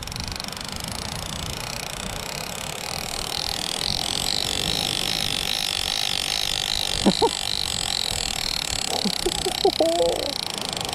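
Shimano TLD50 lever-drag reel buzzing steadily, with a fast pulsing edge, as a hooked shark pulls line off against a tight drag. It grows louder a few seconds in and is mixed with wind rumble on the microphone.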